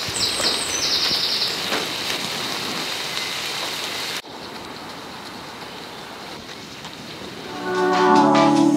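Steady rain falling on tree leaves, dropping to a quieter patter about halfway through. Music fades in near the end.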